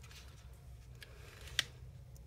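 Origami paper being creased and smoothed flat under the fingers: a faint papery rustle with a sharp crinkle about one and a half seconds in.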